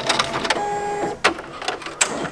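Ricoma ten-needle embroidery machine starting a design: fast mechanical ticking, then a steady tone for about half a second, then a sharp click as a needle comes down, followed by lighter ticks as it begins.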